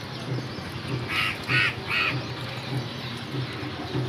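A bird calling three times in quick succession, a little over a second in.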